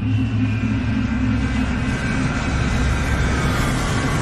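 Rocket launch sound effect: a steady rumbling noise with thin tones that slowly fall in pitch, over a low steady drone.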